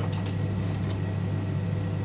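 Steady low hum of a three-phase induction motor fed by a variable frequency drive, turning a lathe spindle under servo position control, with a couple of faint ticks early on.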